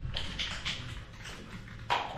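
Soft shuffling and handling noises as things are moved about on a table in a garage, with a sharp knock just before the end.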